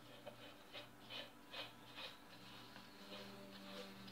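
Faint light ticks, about five of them a little under half a second apart, as the plastic lid is screwed onto the paint cup of a gravity-feed HVLP spray gun, over a low steady hum.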